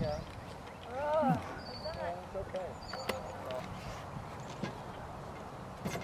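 Birds calling outdoors: a few short rising-and-falling calls and some thin, high whistled notes over a steady background hush.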